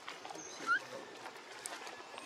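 A baby macaque gives one short rising squeak a little under a second in, over faint outdoor background.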